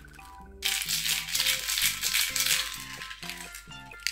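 Yellow plastic baby rattle shaken hard, a loud rattling hiss starting just under a second in and lasting about two seconds, with a few shorter shakes near the end. Light background music plays throughout.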